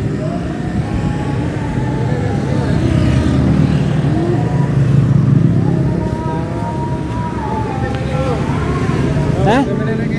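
Steady motor-traffic noise from passing motorcycles and cars, getting a little louder about midway, with faint voices in the background.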